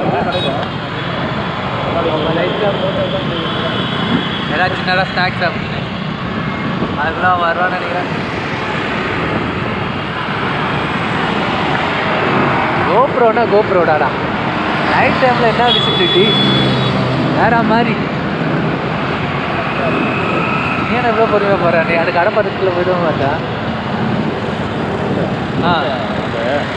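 Steady road and traffic noise from riding through busy city traffic, with a voice heard now and then over it.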